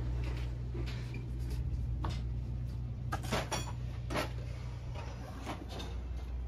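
Scattered knocks and clatters, a few sharp ones about a second apart, over a steady low hum, inside a race-car trailer where racing tyres are being mounted.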